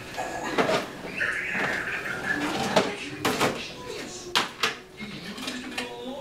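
Rummaging for a roll of tape: a drawer or cupboard being searched, with several sharp clacks and knocks of hard objects being moved about, the loudest pair about three seconds in and another pair near four and a half seconds.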